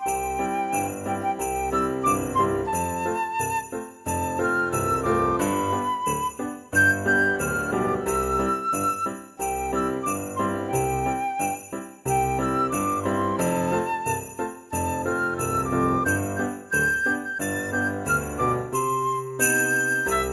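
Background music in a Christmas style: sleigh bells jingling on a steady beat under a bright, bell-like melody.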